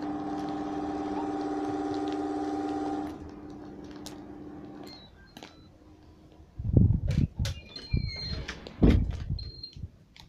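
A steady mechanical hum for the first three seconds, dropping lower and dying out by about five seconds. Then plastic-bag rustling and a few loud bumps as powder is shaken out of a plastic bag into a bowl.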